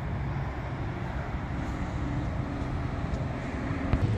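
Steady outdoor background noise: a low hum under an even rushing hiss, with one brief knock near the end.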